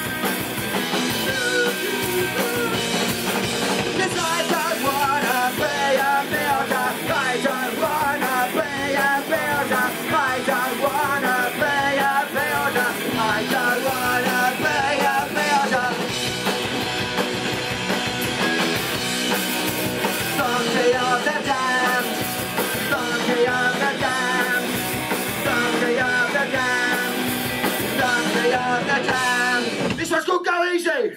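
Punk rock band playing live: electric guitar, bass and drum kit driving steadily, with a singer's vocal over the top.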